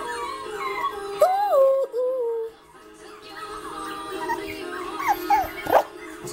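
Shihapom puppy whimpering and yipping in short whines that rise and fall in pitch, with a quick run of them near the end, over steady background music.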